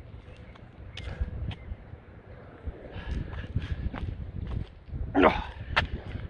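A man breathing hard between weighted burpees, with scattered scuffs and taps of shoes on an exercise mat. About five seconds in comes a loud strained grunt as he drops into the next rep, then a sharp knock as his hands land.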